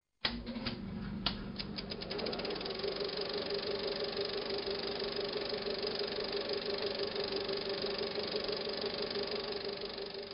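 Film projector sound effect: a click, then clicking that speeds up over the first couple of seconds into a steady whirring rattle with a low hum, as if the projector is starting and running up to speed. It begins to fade near the end.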